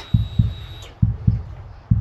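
Triumph Street Twin's parallel-twin engine being turned over very slowly by the starter, heard as low thumps in uneven pairs about once a second: the weak, run-down battery cannot spin it up to starting speed. A thin high whine from the fuel pump priming stops about halfway through.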